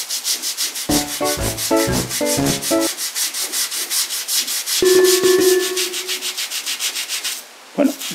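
Toothbrush scrubbing tile grout soaked with dish-soap solution, in quick back-and-forth strokes of about six a second that stop shortly before the end. A short run of pitched notes sounds about a second in, and a louder held tone comes around five seconds in.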